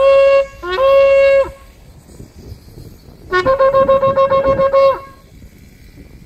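Shofar being blown: a short blast at the start, then a held blast of about a second, each opening with a quick slide up to the same steady note. After a pause of nearly two seconds comes a rapid run of about nine short staccato notes lasting a second and a half.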